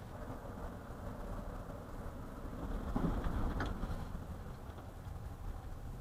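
Car interior road noise picked up by a dashboard camera's microphone while driving: a steady low rumble of tyres and engine that swells louder for about a second midway, then settles back.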